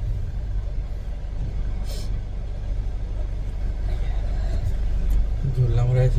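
Steady low rumble of a car running, heard from inside its cabin.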